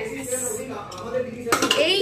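Kitchen pots and utensils clinking and clattering, with a sharper knock about one and a half seconds in.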